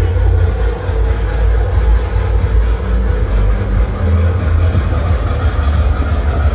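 Deep, steady low rumble from a carnival float driving away, its vehicle running with muffled music from the float's sound system underneath.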